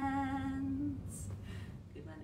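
A woman singing, holding the last note of a children's counting song steady until it ends about a second in, then a short soft hiss.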